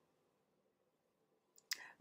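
Near silence: room tone during a pause in speech, broken near the end by a single brief mouth click just before the woman speaks again.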